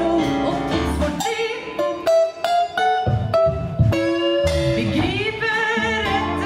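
Live band music with a woman singing, backed by bass, acoustic guitar, congas and drum kit. About a second in, the band drops back to a sparser passage of separate plucked notes, and the full sound returns near the end.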